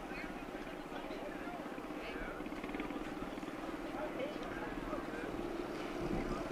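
A steady, faint mechanical drone with a fast, even pulse, under faint distant voices.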